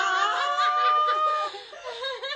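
A group of young women laughing and giggling together, dying down about one and a half seconds in.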